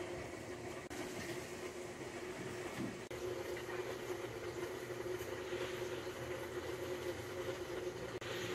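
A steady low mechanical hum with a faint held tone, unchanging throughout.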